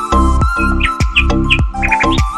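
Background music with a steady beat and held tones, with a few short bird chirps over it about halfway through.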